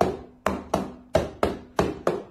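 A hand repeatedly slapping down on an upside-down clear plastic cup on a wooden table: about six sharp knocks in quick succession, roughly three a second.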